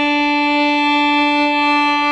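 Violin playing one long bowed note at a steady pitch, the bow drawn out toward the tip on a down bow.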